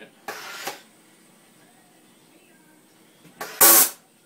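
SodaStream soda maker injecting CO2 into the bottle in two presses. A short hiss comes a quarter second in. Near the end a louder, longer burst ends in a buzz: the loud buzz that signals the pressure has reached the carbonation level.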